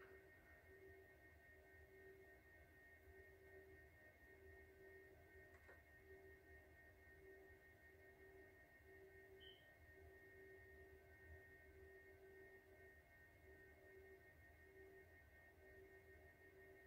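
Near silence: room tone with faint, steady tones, one lower and one higher, that come and go slightly.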